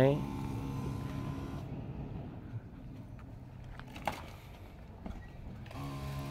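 Steady motor hum of a backpack sprayer's pump. Part way through it drops away to a faint background, and it comes back just before the end.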